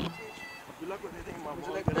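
A brief, thin, high-pitched tone at the start, then faint voices of people talking nearby. A sharp knock comes just before the end.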